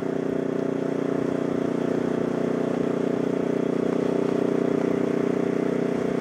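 Motorcycle engine running steadily at cruising speed, with wind and road noise over it.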